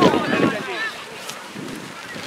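Outdoor youth soccer match: a sharp knock of the ball being kicked right at the start, under a falling shout from the sideline, then distant voices and wind rumbling on the microphone.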